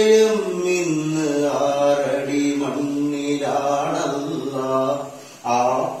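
A man singing a Malayalam Mappila song unaccompanied, holding long, drawn-out notes that slide slowly in pitch, with a short pause for breath near the end.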